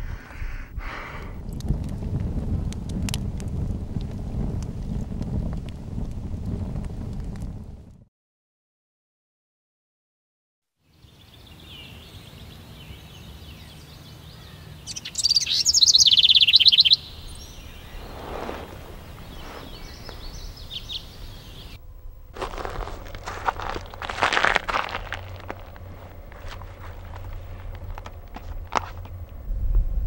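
A fire crackling, with scattered sharp clicks over a low rumble, for the first eight seconds, then a short silence. After that, birds calling in woodland; the loudest is a rapid high trill about halfway through.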